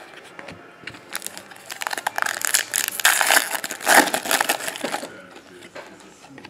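Foil trading-card pack wrapper torn open and crinkled in the hands: a dense crackling with many sharp clicks starting about a second in, loudest in the middle and dying away near the end.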